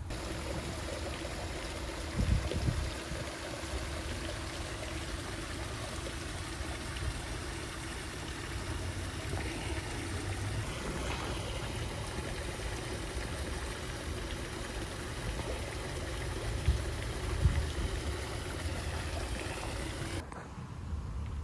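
Koi pond water trickling and splashing steadily over rocks, with a faint steady hum underneath. A few low thumps on the microphone come about two seconds in and again near the end.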